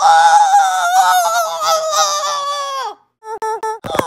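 A boy's voice shrieking one long, high-pitched, strained note for about three seconds, then a few short, quick yelps near the end, with a sharp click among them.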